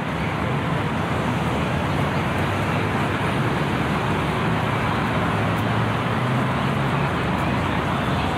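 Steady city ambience: a constant wash of distant road traffic with a low hum, and indistinct voices of passers-by mixed in.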